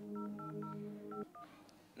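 Phone keypad tones as a number is dialled: about five short beeps, each two tones together, spread over a second and a half. A steady low drone runs underneath and cuts off abruptly just over a second in.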